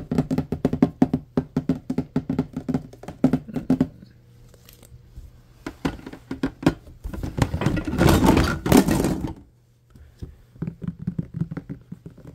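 Fingertips tapping rapidly on hard plastic food storage containers and lids. About seven seconds in there is a louder clatter of containers being moved around, then the tapping picks up again near the end.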